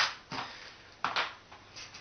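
A small box of paper clips set down on a tabletop with a sharp tap, followed by a few fainter clicks of small items being handled about a second in.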